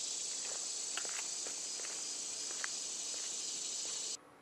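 A steady, high-pitched chorus of insects, with a few faint footsteps on the paved road.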